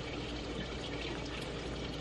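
Quiet, steady hiss of running water with a low hum underneath, unchanging throughout.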